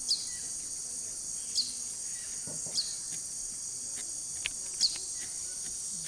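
Steady high-pitched chorus of Amazon rainforest insects. Four short, sharp chirps stand out above it, one every second or so, and they are the loudest sounds.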